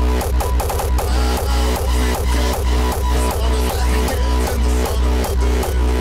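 Electronic dance track played live from a DJ controller, with a steady four-on-the-floor kick drum at about two beats a second over a deep bass line.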